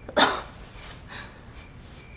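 A dog barking: one loud bark just after the start, then two quieter ones before the middle.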